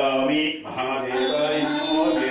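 A man's voice chanting a Hindu mantra in long held, sung tones, with faint musical backing.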